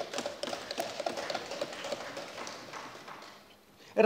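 Members thumping their wooden desks in approval, a dense irregular patter of taps with a few faint voices, fading out over about three and a half seconds.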